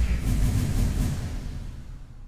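Sound effect of an animated logo sting: a deep rumbling boom fading out steadily, with a faint airy shimmer in its first second.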